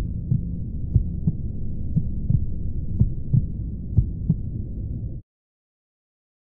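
A slow heartbeat sound effect, a double thump about once a second, over a low rumbling drone; both cut off suddenly about five seconds in.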